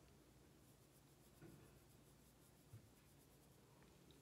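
Near silence: faint scratching of a small pencil brush blending eyeshadow along the skin under the eye, with two soft knocks.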